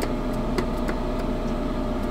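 A steady low mechanical hum, with a few faint light clicks.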